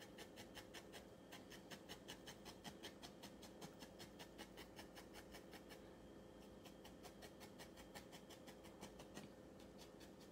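Thin felting needle poking repeatedly through wool into a foam felting pad, faint quick ticks at about five to six a second, flattening the wool.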